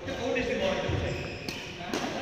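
Badminton rally: a racket strikes a shuttlecock with a sharp hit about a second and a half in, and again just before the end, over voices on court.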